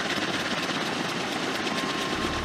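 Kaman K-MAX helicopter hovering low, its single turboshaft engine and intermeshing twin rotors running steadily with a fast, even pulsing of the blades.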